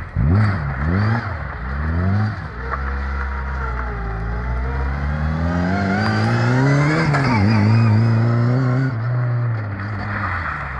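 Lada 2107's four-cylinder petrol engine revving hard: several quick rises and falls in the first couple of seconds, then one long climb in revs that peaks about seven seconds in and drops back.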